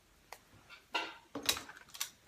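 Faint rustles and a few light ticks of hands parting and gathering a section of hair. A single short spoken word comes in the second half.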